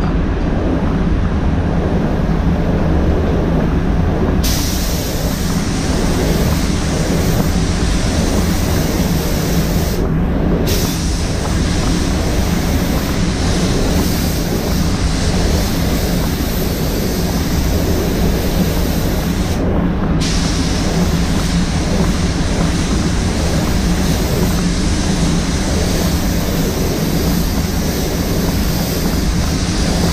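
Paint booth air-handling fans running with a steady low hum. Over it, the hiss of a paint spray gun's air starts a few seconds in and breaks off briefly twice as the trigger is released.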